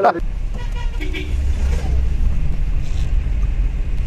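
Steady low rumble of a car's engine and road noise heard inside the cabin of the running vehicle, with faint voices in the background.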